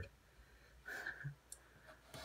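A few faint clicks around the middle, after a soft short rustle, against a quiet room.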